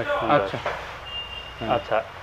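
Indistinct men's voices, with a single short, high, steady electronic beep about a second in.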